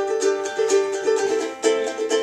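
Acoustic ukulele played solo, a quick run of plucked notes and strums forming a riff.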